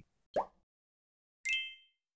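Transition sound effects: a quick rising plop about half a second in, then a bright chime with a few ringing high tones about a second and a half in, dying away quickly.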